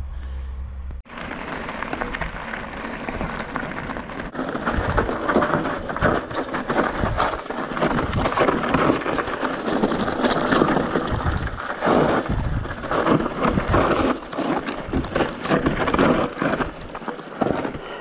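Mountain bike descending a rough dirt and gravel trail, heard from a camera on the bike or rider: tyres crunching over stones and the bike rattling over bumps, in a dense, uneven noise full of knocks, with wind rumbling on the microphone. It starts about a second in.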